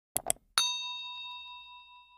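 Two quick clicks followed by a single bell ding that rings on and fades away over about two seconds: the notification-bell sound effect of a YouTube subscribe animation.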